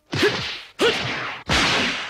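Martial-arts punch sound effects in an anime fight: three sharp whooshing strikes about two-thirds of a second apart, the third the loudest and longest, like a hard hit landing.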